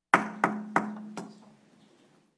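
Wooden gavel rapped four times on the table, the last rap softer, each ringing briefly: the meeting being called to order.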